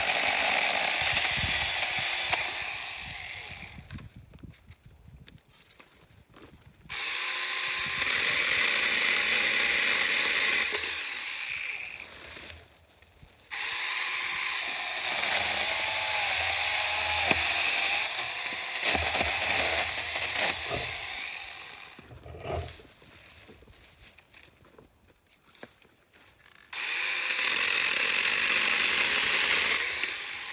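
Small electric chainsaw cutting branches in separate runs. It is already running at the start and dies down about three seconds in, then starts and stops sharply three more times: from about 7 to 12 seconds, from about 13 to 21 seconds, and again near the end.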